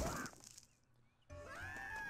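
Cartoon sound track: a sharp hit right at the start, a short near-silent gap, then an animated character's high-pitched cry of pain that rises and falls in pitch.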